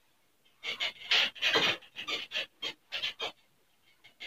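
Handheld duster wiping a whiteboard in quick back-and-forth strokes: about ten short rubbing swishes in three seconds, starting about half a second in.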